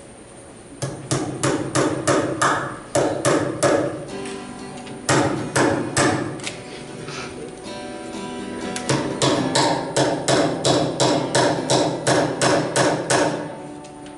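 Hammer driving long nails into a wooden log, in three runs of quick blows about three a second with short pauses between, over soft acoustic guitar playing.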